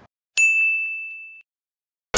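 A single high-pitched bell-like ding sound effect, struck once about a third of a second in, ringing steadily as it fades and cutting off after about a second, set in otherwise dead silence.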